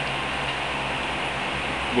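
Room fan running steadily: an even hiss with a faint low hum.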